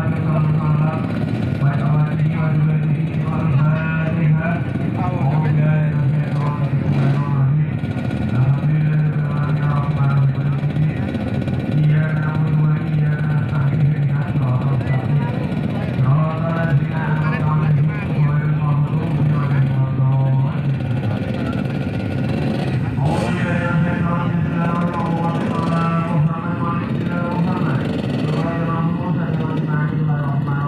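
Trail motorcycles idling together in a group, a low steady engine drone that shifts slightly in pitch every few seconds, under unclear crowd voices.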